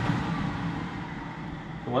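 A steady low background hum with a faint hiss, slowly getting quieter.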